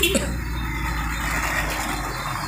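Inside the cab of a slowly moving pickup truck: steady low engine hum and road noise, with a brief knock right at the start.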